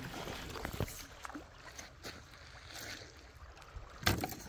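Quiet lakeside ambience: a faint steady hiss with a few soft clicks and knocks about a second in, like light handling noise near the water.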